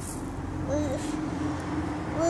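A small child's voice holding a long, drawn-out wordless sound that wavers briefly in pitch partway through, over a steady low rumble of traffic.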